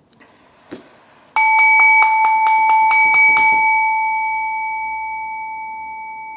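A small metal bell is struck or rung quickly, about ten times in two seconds, each stroke renewing one clear ringing tone. The tone then rings on, slowly dying away. A brief rustle and a soft knock come before it.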